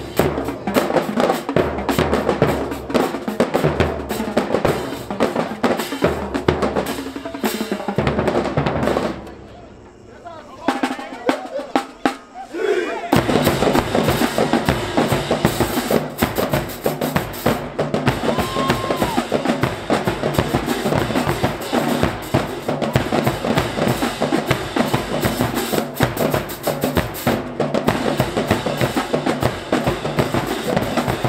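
High-school marching band drumlines playing cadences in a drum battle: snare drums, multi-tenor drums, bass drums and crash cymbals. The first drumline stops about nine seconds in, and after a few quieter seconds the other band's drumline answers about thirteen seconds in.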